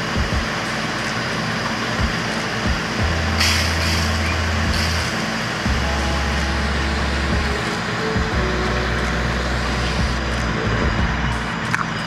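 Garden hose nozzle spraying a fine mist of water: a steady hiss throughout.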